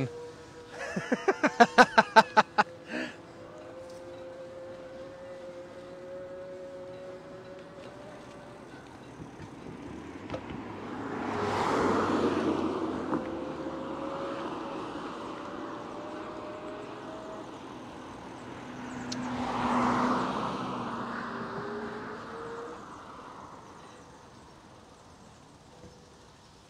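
Laughter at the start, then two cars passing on the street, one about twelve seconds in and another about twenty seconds in, each rising and fading away.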